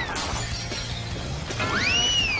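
Cartoon sound effects over background music: a whistle gliding down in pitch, a brief shattering crash just after, and another whistle that sweeps up and back down near the end.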